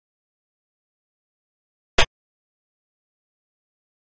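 A single sharp click from a xiangqi program's move sound effect as a piece is placed on the board.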